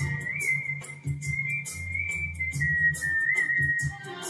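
A man whistling a melody through pursed lips over a karaoke backing track with bass and drums. The whistle holds long high notes with small ornamental turns, steps down in pitch in the second half, and stops at the very end.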